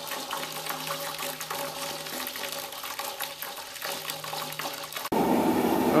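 Wort running out of a cooler mash tun's valve and splashing into the vessel below: a steady pour after mash-out. It cuts off suddenly about five seconds in.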